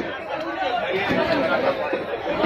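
Overlapping chatter of several people talking at once.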